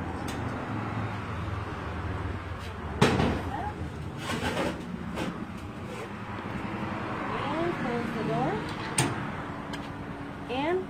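A steel propane cylinder being loaded into a wire-mesh cage of an exchange vending machine: a sharp clank about three seconds in, a few knocks and rattles a second later, and a sharp click near the end as the cage door is shut. A low steady hum sounds in the first few seconds, and faint voices come through.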